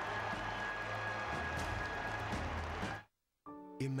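Orchestra music playing over crowd applause. It cuts off abruptly about three seconds in, and after a short silence new music starts just before the end.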